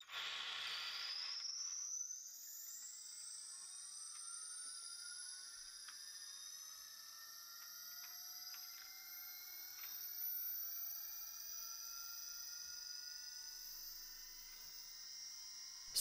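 Brushless motor spinning up a 3D-printed gyroscope flywheel from rest: a faint whine made of several tones that climb steadily in pitch and level off as it nears speed. There is a short hiss in the first two seconds and a few light clicks partway through.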